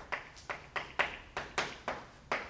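Chalk writing a word on a blackboard: a quick series of sharp taps and short strokes, about four a second, as each letter is put down.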